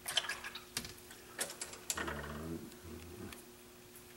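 Several sharp taps and clicks over the first two seconds, then a short, low, voice-like murmur.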